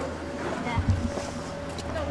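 Street noise beside roadworks: a steady low engine rumble, with wind on the microphone and a brief low thump about a second in.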